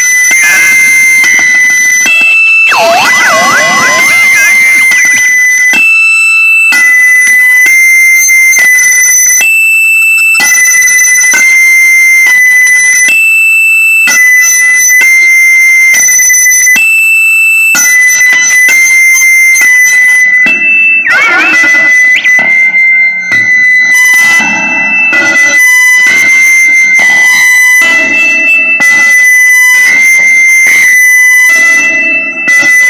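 Looped electric-guitar feedback, changed by an OCD overdrive pedal, steps between a few high pitches in a repeating arpeggio-like pattern. Warbling pitch sweeps come in near the start and again about 21 seconds in, as the delay and phaser pedal knobs are turned.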